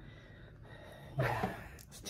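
Quiet room tone, then about a second in a short, breathy exhale from a person.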